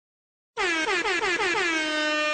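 Hip-hop style air horn sound effect: a fast stutter of about seven short blasts, each dipping in pitch, running straight into one long held blast near the end.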